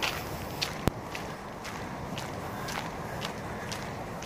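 Footsteps walking on a dirt trail, a steady pace of about two steps a second, with one sharp click about a second in.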